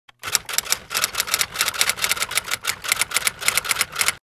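Typewriter keys clacking in a quick, uneven run, several strikes a second, as a typing sound effect starting about a quarter second in.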